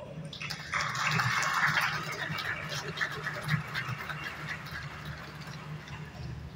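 Audience applauding in a large hall. The clapping swells about half a second in, is strongest over the next second or so, then slowly dies away.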